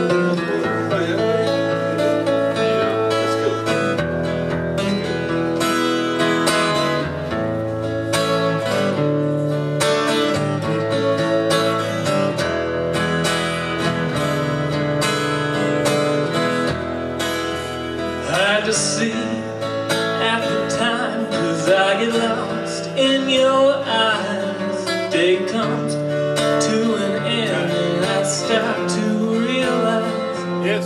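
Solo acoustic guitar playing the slow introduction to a blues song, with bass notes that shift every few seconds under the chords. In the last third a wordless, wavering vocal line joins over the guitar.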